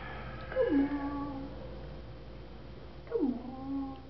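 Aspin puppy whining twice: two short calls about two and a half seconds apart, each dropping in pitch and then holding a steady note.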